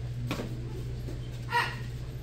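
A child's short, high-pitched shout, a martial-arts kiai, about one and a half seconds in, over a steady low hum. A fainter sharp slap or stomp comes just before.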